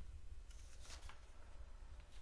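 A faint, brief rustle about half a second in, over a low steady hum.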